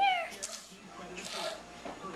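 A high, sing-song human voice drawing out a short call that falls in pitch at the start, followed by soft scattered rustles.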